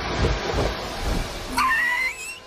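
Background music, then about one and a half seconds in a pet parrot's call, a squawk that slides up and down in pitch.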